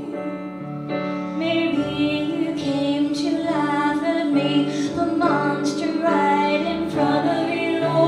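A woman singing a musical-theatre song into a microphone, backed by a live band of piano, electric guitar, bass and drums.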